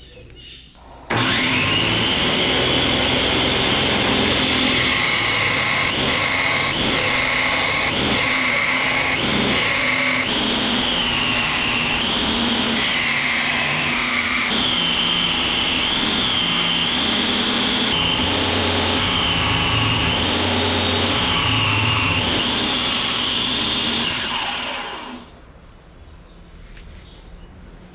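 Belt grinder running with a coarse abrasive belt, grinding the profile of a small knife blank. Its high whine wavers up and down in pitch through the second half. It starts abruptly about a second in and dies away near the end.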